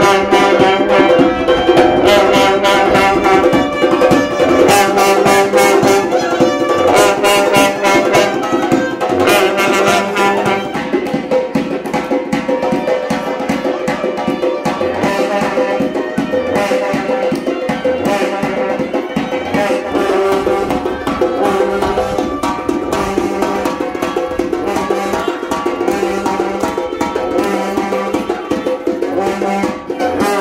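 Uzbek wedding band playing live: karnay long brass horns sound sustained notes over a steady low drone while a surnay reed pipe carries the melody and a doira frame drum beats, the drumming densest in the first ten seconds or so.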